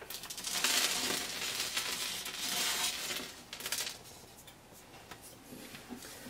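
Small loose scale rock debris (Woodland Scenics talus) being poured and shaken from its plastic bag: a gritty rustling rattle for the first three and a half seconds or so, then only faint small clicks.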